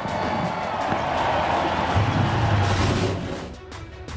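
Crowd cheering over background music, fading out near the end.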